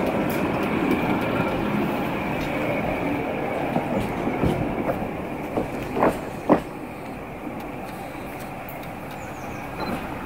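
A tram running along the rails close by, its rumble fading as it pulls away down the track. Two sharp knocks come about six seconds in.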